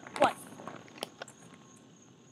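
A spoken count of 'one', then two faint clicks a quarter of a second apart about a second in, from a color guard flag pole being handled.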